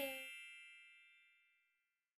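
A bell-like chime sound effect: a cluster of high ringing tones fading away over about a second and a half, the highest dying first.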